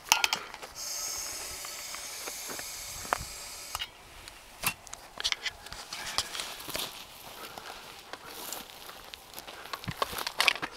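Propane hissing steadily for about three seconds as it is sprayed into the chamber of a homemade combustion potato gun, then scattered clicks and knocks from handling the gun.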